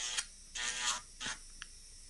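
Small electric nail drill with a sanding band humming steadily, then stopping a fraction of a second in. Faint handling rustles and a brief tick follow.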